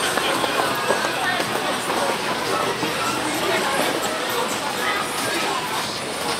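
Busy pedestrian shopping street: a steady hubbub of passers-by talking, with music playing in the background.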